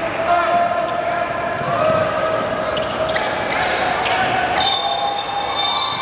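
A basketball bouncing on a hardwood gym floor during play, heard as sharp thuds, over the indistinct voices of players echoing in a large hall.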